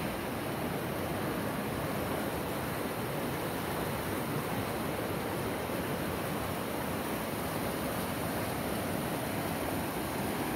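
A small waterfall on a mountain creek, water rushing over rocks in a steady, unbroken rush.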